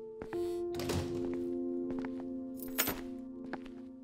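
Slow music of sustained notes building into a chord, over which a front door thunks shut about a second in, followed by a sharper knock near three seconds as a shoe drops onto the tile floor, with a few small taps between.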